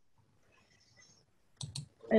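Near silence on a video call, broken near the end by two short clicks in quick succession.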